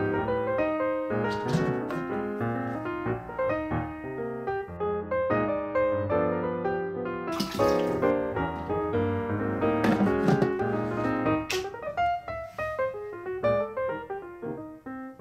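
Piano background music plays throughout. About halfway through there is a short splash of water being poured from a plastic bottle into an electric hot-water pot.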